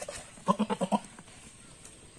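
Goat bleating: one short, quavering bleat broken into about six rapid pulses, starting about half a second in and lasting about half a second.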